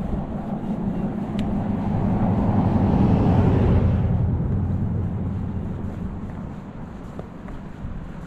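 A car passing on the road: its tyre and engine noise swells to a peak about three seconds in, then fades away.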